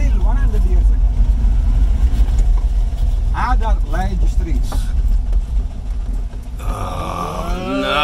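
Vintage Fiat car's engine running with a deep, steady rumble heard inside the cabin while driving slowly. The rumble drops away about six and a half seconds in as a hiss rises.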